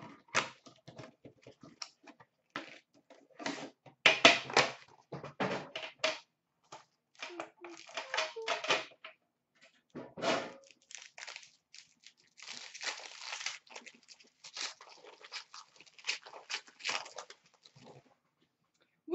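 Hands opening a sealed Upper Deck Premier hockey card box and handling the cards: a string of short crinkles, tears and clicks of cardboard and wrapper, with a longer stretch of steady rustling a little past the middle.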